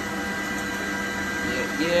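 Glowforge Plus laser engraver running while its head engraves a spray-painted tile: a steady whirring hum with several constant high tones. A voice says "yeah" near the end.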